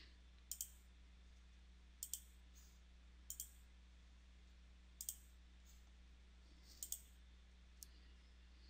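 Computer mouse button clicks, each a quick press and release: five paired clicks a second or two apart and a single lighter click near the end, over a faint steady hum.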